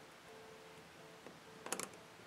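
Faint clicking of a metal hook against the pegs of a clear plastic Monster Tail loom while working rubber bands, with a quick cluster of sharper clicks near the end.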